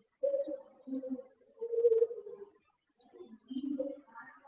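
A pigeon cooing, a series of short low coos picked up faintly by the lecturer's microphone.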